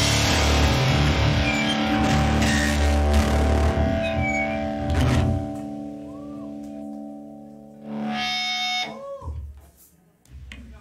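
A live rock band with distorted electric guitars plays loudly, then stops about five seconds in, leaving a held guitar chord ringing and fading. Near the end comes a brief high-pitched whine and a few sliding tones before the sound cuts off.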